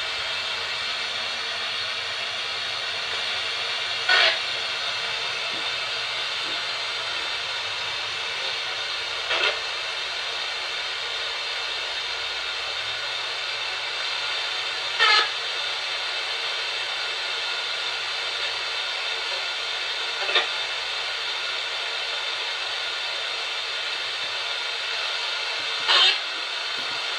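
Handheld spirit box (radio-sweep ghost box) giving out a steady static hiss, with short louder bursts about every five seconds. One burst, near the middle, is captioned by the investigators as the word "help".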